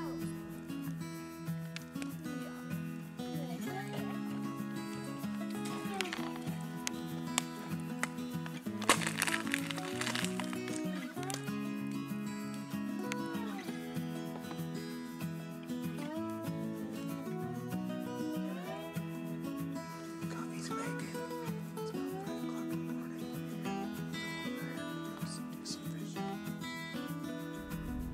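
Background music: a song with steady held chords that change every second or two, and a few gliding melody lines over them.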